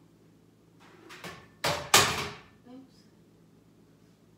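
Off-camera household knocks and bangs as someone rummages for a paint tube: light knocks, then two loud bangs in quick succession a little before halfway, followed by a brief voice sound.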